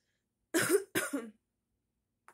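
A woman coughing twice in quick succession.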